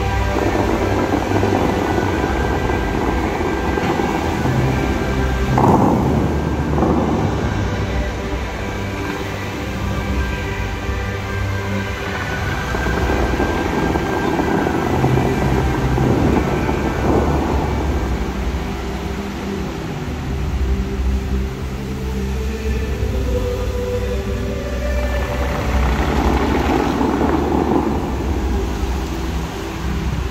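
Music played over the Dubai Fountain's loudspeakers, with a deep rumble beneath it. The rush of the water jets swells up several times, about five seconds in, again midway and near the end, as the choreographed jets shoot up.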